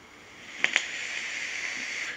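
A drag on a dripper vape: a steady hiss of air drawn through the wet-cotton coil, starting about half a second in, with two short clicks as it begins.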